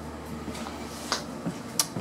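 A few short, sharp clicks, the clearest about a second in and near the end, over a low steady hum that fades out about halfway through.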